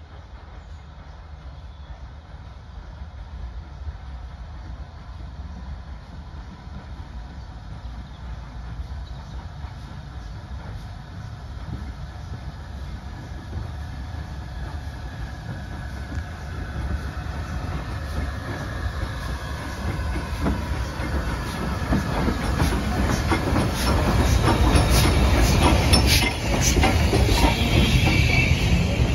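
Steam locomotive and its train approaching and rolling past: a low rumble that grows steadily louder, with wheels clicking over the rail joints more and more from about halfway in, loudest at the end as the tender and coaches pass close by.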